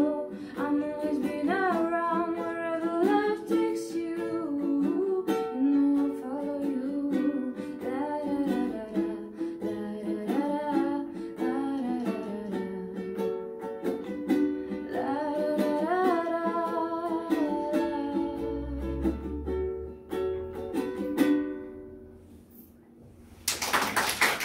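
Ukulele strummed and picked while a woman sings along; the song closes, the playing dying away on a last chord about two seconds before the end.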